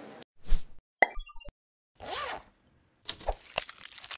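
News channel's closing logo sting made of sound effects: a quick whoosh, a short run of twinkling notes, a second whoosh with a sliding tone, then a few sharp clicks.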